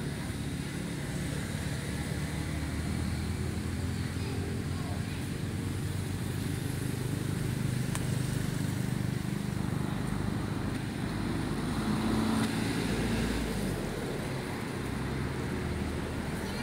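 Low rumble of passing road traffic, vehicle engines running steadily, growing louder around the middle and easing off near the end.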